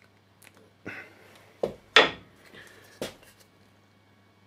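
Pine wooden joint squeezed hard between two hands, giving a few short wooden clicks and knocks, the loudest about two seconds in. The joint flexes but does not break.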